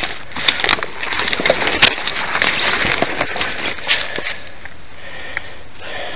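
Twigs and brush crackling and snapping as someone pushes on foot through forest undergrowth, a dense run of sharp cracks for about four seconds before it quietens.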